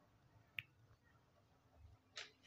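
Near silence: room tone, with one short sharp click about half a second in.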